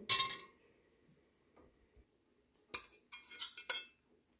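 A metal spoon clinking against a clay pot: one short ringing clink at the start, then a quick cluster of clinks near the end.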